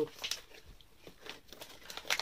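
Faint crinkling and rustling of a plastic snack packet being handled, in a few short bursts.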